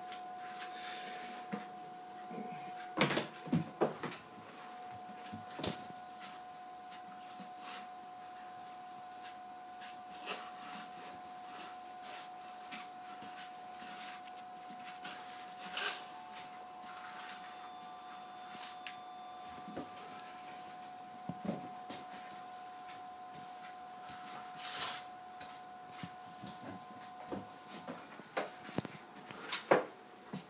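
Plastic dustpan and hand brush knocking and scraping on a hardwood floor in scattered taps, the loudest a few seconds in and about halfway through. A steady high tone runs underneath.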